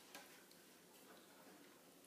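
Near silence: room tone with a faint click just after the start and a few fainter ticks.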